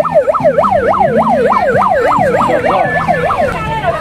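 A siren wailing in fast up-and-down sweeps, about three a second, stopping about three and a half seconds in, over crowd chatter.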